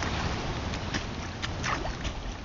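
Small children's feet stamping and splashing through a shallow puddle, a few separate splashes over a steady low rumble.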